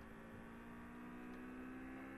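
Faint, steady electrical mains hum with a low background hiss, the room tone of an open microphone line.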